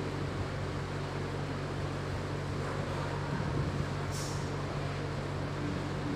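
Steady low hum with a hiss over it, and one brief high hissing sound about four seconds in.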